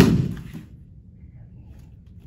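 A person swept off his feet landing on a foam training mat: one heavy thud right at the start, dying away within about half a second.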